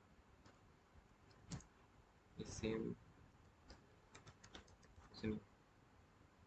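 Faint typing on a computer keyboard: a single click about a second and a half in, then a quick run of about eight keystrokes around four seconds in, as a search query is typed.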